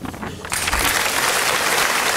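Audience applauding, swelling in about half a second in and then holding steady.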